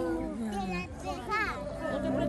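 Children's voices calling out together: one long drawn-out call that falls in pitch over the first second, then shorter calls.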